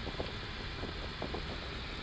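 Steady low hum inside an Airbus A330-200 cockpit, its engines idling with the aircraft held on the runway, with a few faint ticks.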